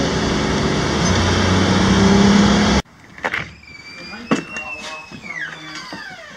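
Steady road and engine noise inside the cabin of a 2003 Ford Explorer Sport Trac, its 4.0-litre V6 cruising up a freeway ramp. It cuts off suddenly about three seconds in, giving way to a much quieter room with a thin, high gliding call and a few soft knocks.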